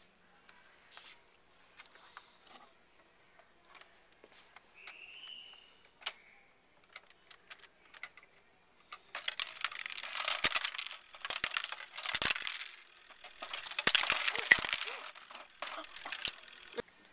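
Small hard pieces clattering and rattling down a slope of plastic Lego plates in the model avalanche, in three dense bursts over the last seven seconds, after a stretch of faint scattered clicks from handling the model.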